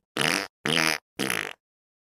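A rapid run of short, pitched farts, about two a second, stopping about one and a half seconds in.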